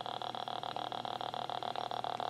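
Electrical noise from a speaker driven by a DFPlayer Mini MP3 module between playbacks: a steady high-pitched whine and hum with a fast, even ticking. This is the kind of noise a DFPlayer setup is troubleshot for.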